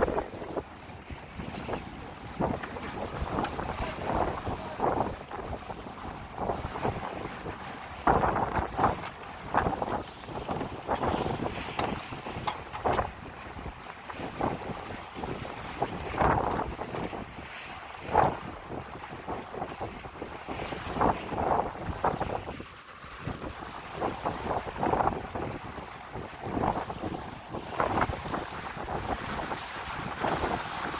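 Wind buffeting the microphone in irregular gusts over the rush of water along the hull of a sailing yacht under way.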